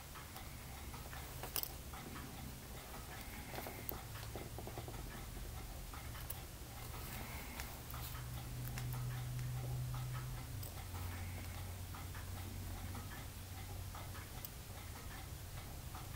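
Quiet room tone with a low steady hum and a few faint, light ticks and clicks.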